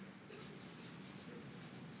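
Felt-tip marker pen writing Chinese characters on paper: a series of short, faint scratching strokes.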